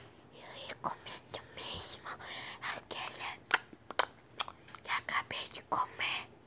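A person whispering close to the phone's microphone, in short breathy bits broken up by scattered sharp clicks.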